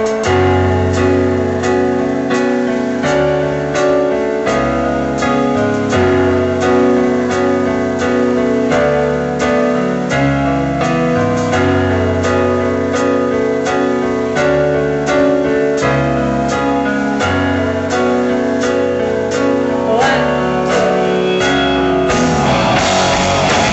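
Live band playing an instrumental passage: stage-piano chords from a Roland RD-600 lead over electric guitar, with drums keeping a steady beat.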